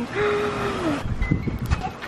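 A woman's drawn-out, wordless excited cry, held on one pitch for most of a second and dropping away at the end. After it comes an irregular low rumble on the microphone from wind or handling.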